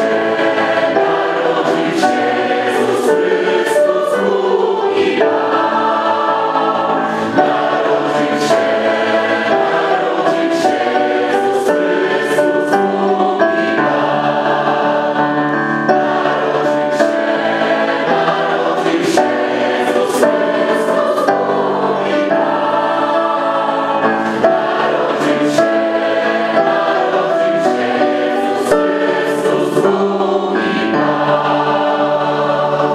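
Mixed choir of men and women singing together with sustained notes that change every second or so.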